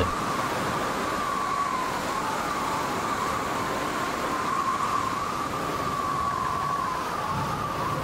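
A siren holding one slowly wavering pitch over a steady hiss of noise.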